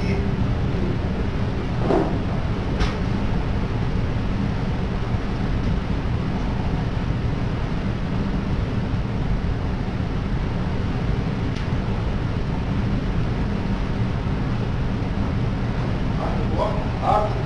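Steady low rumble and hiss on the Costa Concordia's bridge as picked up by its voyage data recorder (black box) microphone, with a brief falling sound about two seconds in and a faint click just after.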